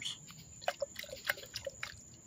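Faint sloshing and dripping of potassium nitrate solution swirled in a glass beaker, with a scatter of small ticks and clinks.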